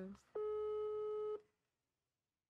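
Phone ringback tone from a mobile phone held to the ear: one steady beep about a second long. Brazil's ringing tone, a sign that the number being called is ringing.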